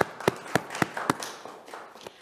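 A handful of people clapping: sparse, evenly spaced handclaps, about three or four a second, fading out over the second half.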